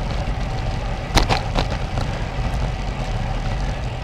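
Wind rushing over a GoPro camera's microphone and road bike tyres rolling on a concrete street at about 15 mph, a steady low rush, with a few sharp clicks about a second in.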